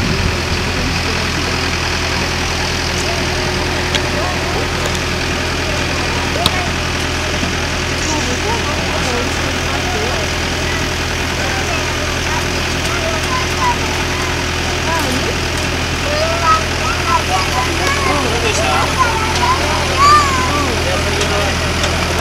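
Aerial work platform truck's engine running steadily with a low drone while the boom lowers the bucket. People's voices can be heard over it, more so in the second half.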